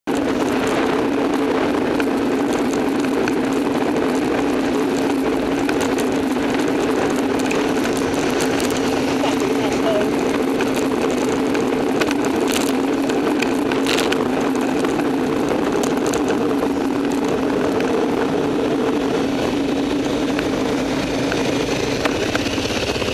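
Steady wind and road noise on a bicycle-mounted camera's microphone while riding in city traffic, with a few brief knocks about halfway through.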